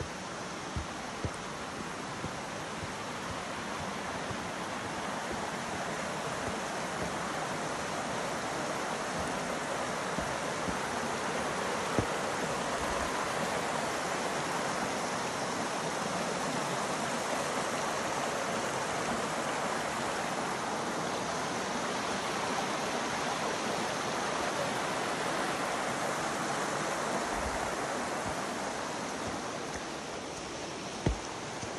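Rushing water of a small rocky creek running over stones and little cascades: a steady rush that swells as the creek comes close, holds through the middle and fades near the end. A few light knocks sound early on and once about twelve seconds in.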